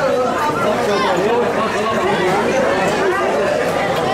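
Several people talking over one another: table chatter.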